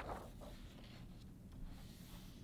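A page of a hardcover picture book being turned: a crisp paper flip right at the start, then a brief papery rub as a hand smooths the page flat. A faint rustle follows a little later.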